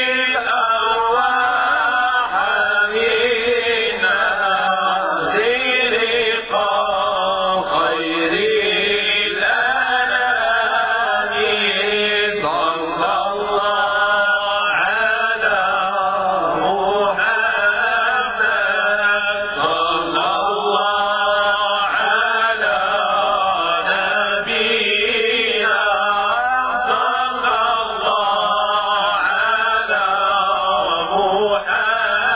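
Men's voices chanting Islamic devotional praise (madih) without instruments, in long, winding ornamented phrases whose words are not made out. A low note is held steadily underneath the whole time.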